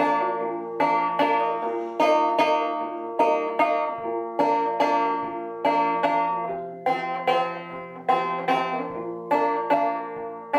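1888 Luscomb five-string banjo, tuned about two frets below gCGCD, played two-finger style in waltz (three-count) time, with fingers plucking up on two strings at once. A steady run of plucked notes and chords, each ringing and decaying before the next.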